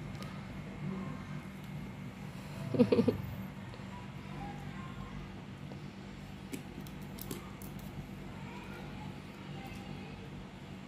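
A short burst of human laughter, a few quick pulses, about three seconds in. Otherwise a quiet room with a steady low hum and a few faint clicks.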